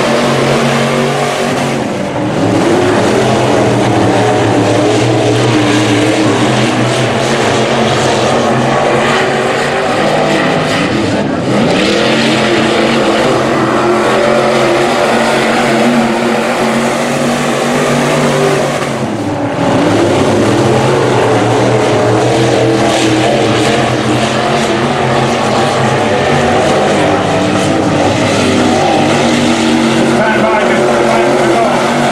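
A field of IMCA Sport Mod race cars with V8 engines racing on a dirt oval, running loud and steady. The engine pitch rises and falls as cars pass, with brief dips in level about two seconds in and again near the twenty-second mark.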